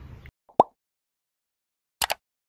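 A single short, rising 'bloop' pop sound effect about half a second in, the kind of pop that accompanies an animated subscribe-button graphic appearing. Faint background hiss cuts off just before it, and the rest is silent.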